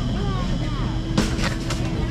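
Shopping cart rolling along a supermarket floor with a steady low rumble, and one sharp knock about a second in. Faint voices and a steady store hum sit underneath.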